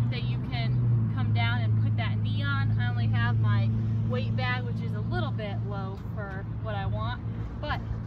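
A woman talking over a steady low engine drone from a nearby motor vehicle, which thins out about five to six seconds in.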